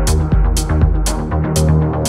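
Electronic dance track: a hi-hat about twice a second over a kick drum and bass line. About two-thirds of the way through, the kick drops out while the hi-hats and a held bass continue.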